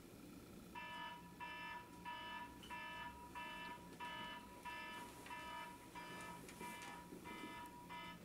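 Alarm clock beeping: the same short electronic beep repeats about one and a half times a second, starting about a second in.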